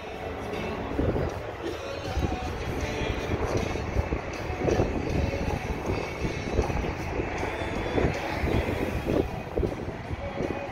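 Outdoor ambient noise picked up by a handheld microphone: a steady hiss with irregular low rumbling throughout.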